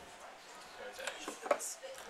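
Faint background voices chattering, with a short sharp knock about one and a half seconds in.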